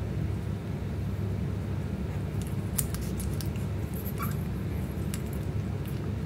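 A steady low rumble runs under faint, scattered clicks and one brief high squeak about four seconds in, from week-old puppies stirring in their sleep.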